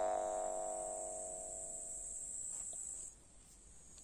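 Steel jaw harp (vargan) tuned to G1, base frequency 49.1 Hz, its last played note ringing out and dying away over about two and a half seconds, the upper overtones fading first. A steady high insect trill sounds throughout, dropping out briefly near the end.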